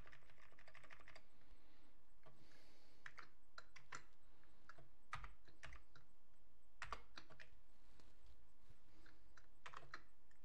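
Typing on a computer keyboard: a quick run of keystrokes in the first second, then slower, irregular single key presses.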